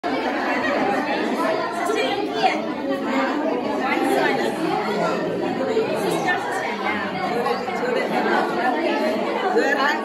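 A group of women and girls chattering, many voices talking over one another at once.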